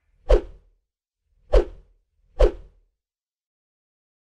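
Three short whoosh sound effects, each with a low thud at its start, from an animated TV-station logo end card. They come about a third of a second in, at about a second and a half, and just under a second after that.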